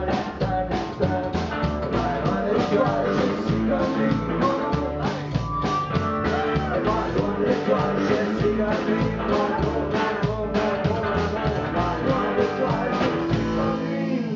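Live rock and roll band playing: electric guitar and drum kit with a steady driving beat. The drumming stops just before the end, leaving ringing guitar and bass notes.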